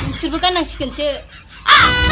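A woman talking animatedly, with a loud, harsh cry near the end.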